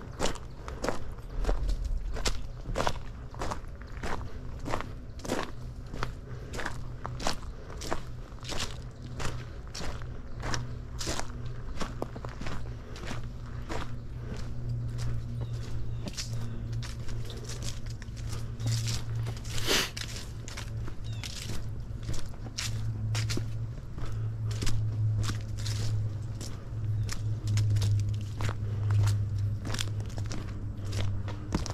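Footsteps of a person walking a trail at a steady pace, about two steps a second.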